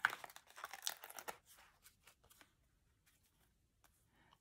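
Cardstock paper crackling and rustling as a die-cut scalloped circle is pressed and pulled free of the surrounding collage sheet. A quick run of short crackles in the first second and a half, thinning to a few faint ticks and then near silence.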